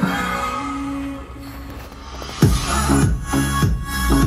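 Electronic music with heavy bass played through a car audio system: a quieter held passage, then the deep bass and beat kick back in about two and a half seconds in.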